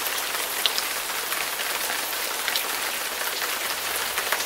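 Recording of steady rain falling: an even hiss with scattered small drop ticks.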